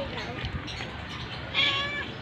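A stray cat meowing once, a short high-pitched meow about one and a half seconds in.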